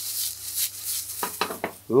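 Stir-fry vegetables sizzling in very hot rapeseed oil in a stainless frying pan. The hiss rises and falls in quick surges and dies down about a second in.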